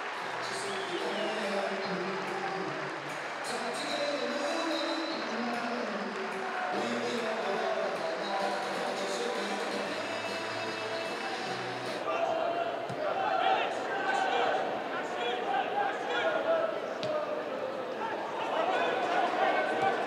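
Music played over a stadium public-address system for about the first twelve seconds. Then open-air match sound follows: crowd noise and players' shouts, with a few thuds of the ball being kicked.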